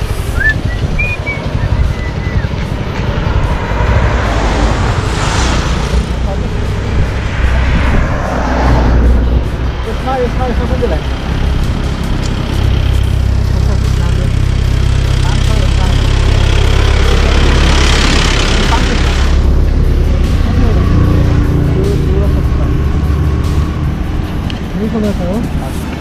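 Steady low engine rumble from a stopped motorcycle, with a few louder swells of road noise lasting about two seconds each, under faint voices.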